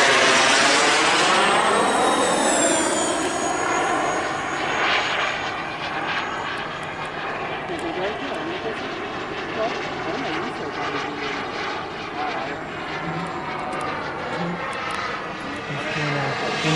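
Ducted electric fans of an E-flite A-10 Thunderbolt II RC jet whooshing past in a flyby. A high whine falls in pitch as the jet goes by, then the sound settles to a steadier, quieter whine as it flies farther off.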